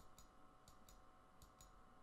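Faint computer mouse clicks in near silence: three quick pairs of clicks, spaced a little under a second apart.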